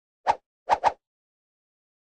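Three short popping sound effects: one, then a quick pair about half a second later.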